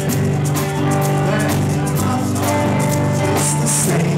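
Live amplified rock-blues band jamming: electric guitars and bass over a drum kit, playing loudly and steadily.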